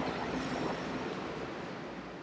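Steady rushing noise, even across low and high pitches, slowly growing fainter.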